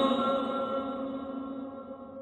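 Male reciter's chanted Quran recitation (tajweed), the held final note of a phrase dying away in a long echo, one steady pitch fading gradually over the two seconds.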